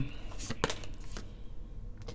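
Tarot cards being handled and drawn from the deck: a few short, crisp card clicks over a low steady hum.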